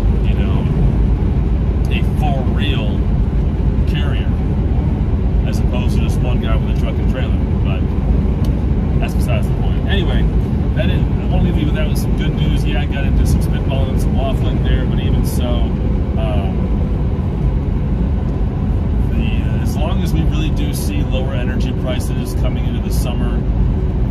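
Steady low drone of a semi-truck's engine and tyres heard inside the cab while driving, with a man talking over it throughout.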